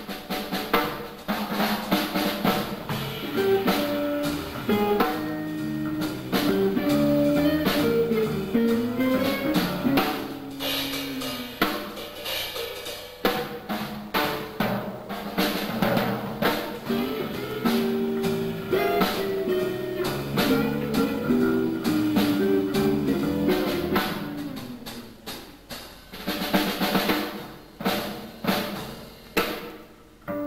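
Live jazz trio with the drum kit to the fore: snare, rimshots, bass drum and cymbals played busily, over moving note lines from a hollow-body archtop guitar and an upright double bass.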